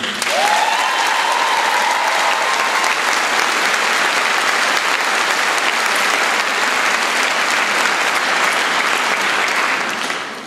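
A large audience applauding steadily. One voice rises and holds in a long whoop over the clapping during the first three seconds.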